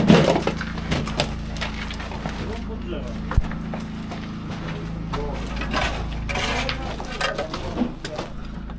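Muffled, indistinct voices of people at work in a concrete bunker over a steady low hum, with scattered light knocks and crunches.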